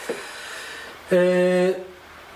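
A man's short hum with lips closed, held on one steady pitch for just over half a second, about a second in; the rest is quiet room tone.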